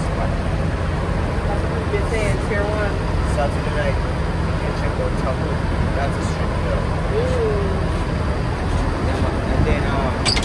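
Steady low rumble of an idling minibus engine, with indistinct voices talking in the background.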